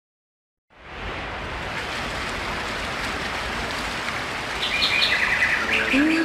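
Recorded nature ambience opening a song: a steady rain-like hiss fades in about a second in, joined near the end by fast, high bird chirps.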